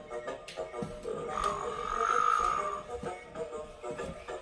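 Electronic sound effects from a Playskool Kota the Triceratops ride-on animatronic toy's speaker, with a drawn-out croaky call from about a second and a half in, over music.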